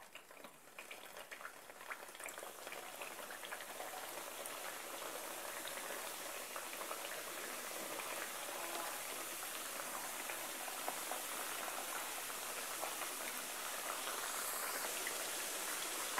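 Panzerotti frying in hot oil in a non-stick pan: a bubbling sizzle with small crackles that starts faint and builds over the first few seconds as more pieces are added, then holds steady.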